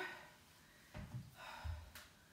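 A woman breathing during resistance-band curtsy lunges, with soft low thuds of her feet on the exercise mat about a second in and again near the end.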